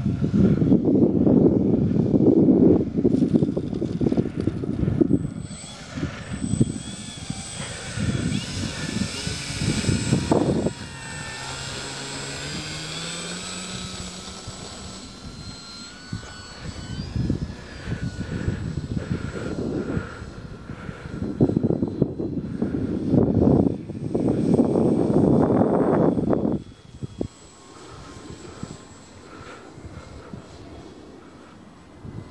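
Electric motor and propeller of a Dynam Beaver RC model plane whining as it passes low for a touch-and-go, the pitch sliding as it goes by. Gusts of wind buffet the microphone, loudest at the start and again near the end.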